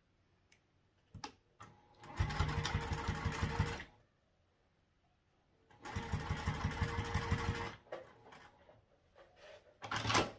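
Domestic sewing machine stitching in two runs of about two seconds each, one down each side of a small folded fabric strip, with a few light clicks before the first run.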